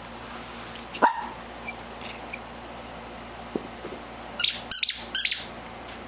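Small terrier giving a quick run of short, high barks about four and a half seconds in, in play over a tennis ball, asking for it to be thrown. A single sharp tap about a second in.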